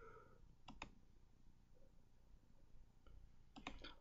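Near silence: room tone with a few faint clicks, two just under a second in and a small cluster shortly before the end.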